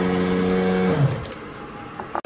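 Sound effect for an animated logo intro: a steady droning tone with overtones that slides down in pitch about a second in, then falls away to a fainter hiss.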